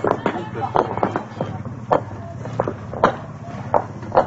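Concrete interlocking paving stones clacking against each other as they are laid by hand: about seven sharp, irregular knocks.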